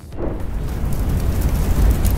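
Cinematic logo-intro sound effect: a deep rumbling whoosh that swells in about a quarter second in and grows louder toward the end, like a fiery explosion.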